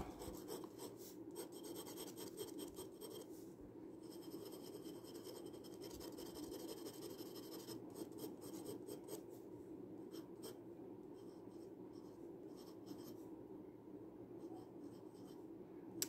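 Glass dip pen nib scratching faintly across sketchbook paper in short, irregular hatching strokes, then lettering a word near the end.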